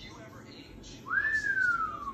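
One loud, clear whistle about a second in, rising quickly and then gliding slowly down in pitch.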